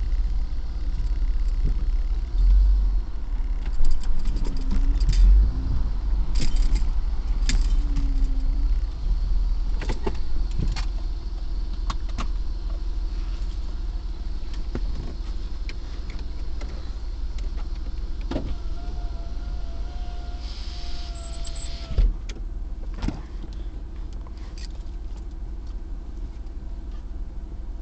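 Car interior noise while driving: a steady low engine and road rumble inside the cabin, with scattered clicks and knocks, and a thin steady whine for a few seconds past the middle.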